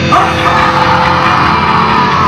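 Hardcore band playing live at full volume: distorted guitar, bass and drums, with one long harsh scream from the vocalist starting just after the beginning and fading just after the end.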